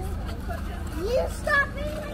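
Passers-by chatting on a busy pedestrian street, with a nearby voice louder about a second in, over a steady low hum.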